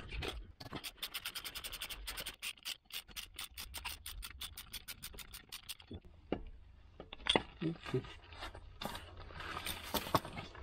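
Ratchet wrench clicking in a fast, even run for about five and a half seconds while a bolt on an air-conditioning compressor mount is undone. After that, a few scattered metal knocks as the compressor is worked loose.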